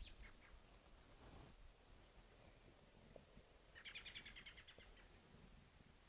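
Faint bird calls over near silence: a brief high chirp at the start, then a quick, rapid run of high notes about four seconds in.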